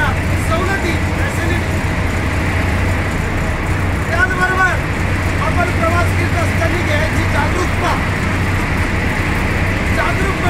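Inside a state transport bus cabin: a steady low engine drone and road noise as the bus runs, with a voice heard briefly about four seconds in and again a little later.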